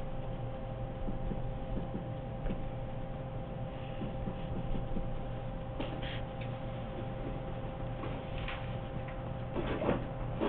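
Steady electrical hum in a quiet room, with a few faint ticks and rustles about six and eight and a half seconds in.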